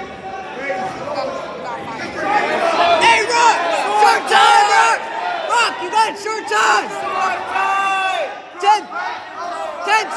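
Coaches and spectators yelling over one another at a wrestling bout, loud overlapping shouts of encouragement echoing in a gym.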